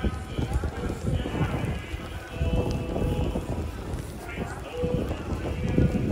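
Busy street ambience: footsteps on snow under the voices of passers-by, with music playing in the background.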